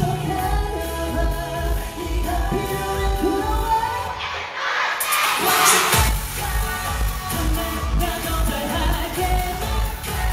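A K-pop dance track played loud through a concert sound system, with a steady kick-drum beat under singing. About four seconds in, the beat drops out for a moment while a rush of noise swells, then the beat comes back.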